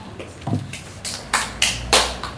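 A few sharp clicks or knocks, about three in the second second, after a short low sound about half a second in.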